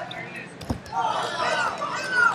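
A heavyweight wrestler thrown down onto the wrestling mat: one heavy thud just under a second in, followed by loud shouting voices from around the mat.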